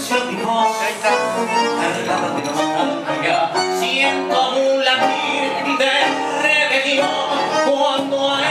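A live tango trio of piano, bandoneón and guitar playing an instrumental passage.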